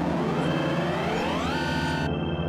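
Electronic music from an ASM Hydrasynth synthesizer: a pitched tone sweeps upward for about a second and a half and then holds, over a steady low drone.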